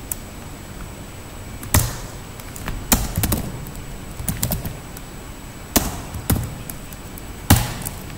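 Keystrokes on a computer keyboard: irregular, separate clacks with pauses between them, a few of them louder than the rest.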